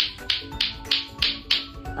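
Lato-lato clacker balls, two plastic balls on strings, knocking together in a steady rhythm of about three sharp clacks a second, over background music with sustained notes.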